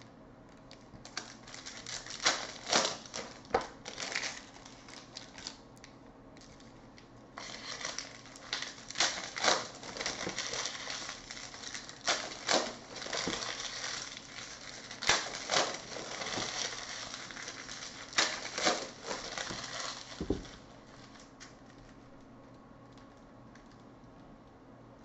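Trading-card pack wrappers crinkling and crackling as the packs are handled and opened, with sharp snaps among the crinkles. The handling comes in two long stretches and ends about twenty seconds in with a dull thump.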